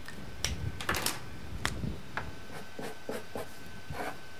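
Felt-tip marker drawing a run of short hatching strokes across paper, shading in a circle, the strokes coming in quick clusters through the seconds.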